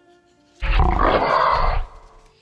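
Added dragon sound effect: a loud roar starting about half a second in and lasting just over a second, over soft background music.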